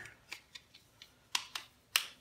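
Plastic battery cover of an Amazon Alexa Voice Remote being fitted back on and snapped shut: several light plastic clicks, the sharpest near the end.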